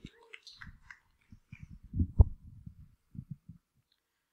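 Handling noise on a handheld microphone: a scatter of low thumps and knocks as it is carried about, the loudest bump about two seconds in.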